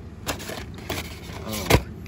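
Light clicks and taps of cardboard-and-plastic blister-pack toy cars being handled on display pegs, with one sharper knock near the end.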